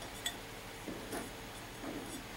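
Faint handling sounds of wired ribbon and chenille stems being twisted by hand: a few soft ticks and crinkles spread through the two seconds over quiet room tone.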